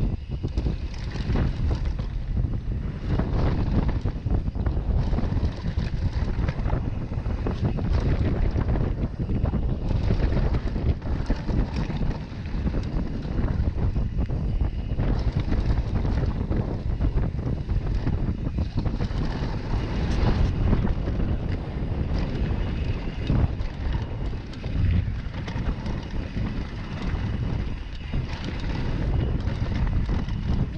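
Wind buffeting the microphone of a camera riding on a downhill mountain bike at speed, over a steady low rumble of tyres on a dirt trail. Frequent clatter and knocks run through it from the bike's chain, frame and suspension over the rough ground.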